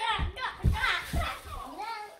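Young children's voices chattering and calling out as they play, with a few dull low thumps underneath.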